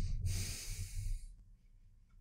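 A person sniffing deeply through the nose, smelling a freshly sprayed fragrance: the tail of one long draw, then a second, stronger draw lasting about a second.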